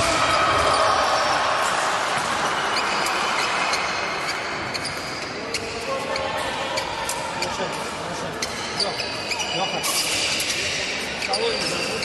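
Fencers' footwork on the piste: repeated short thuds of feet stepping and stamping on the hall floor, echoing in a large sports hall.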